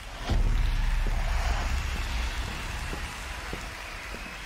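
Studio audience applause from the TV talent show coming in suddenly, an even noisy wash over a deep low rumble that slowly fades.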